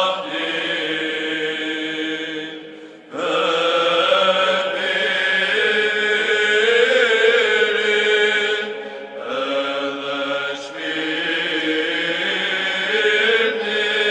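Eastern Orthodox liturgical chant: voices singing long, held phrases, with short breaks about three seconds in and again about nine seconds in.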